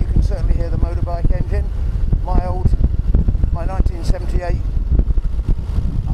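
Steady low motorcycle engine and wind rumble heard through a clip-on microphone inside a closed-visor helmet, with a rider's muffled voice talking over it.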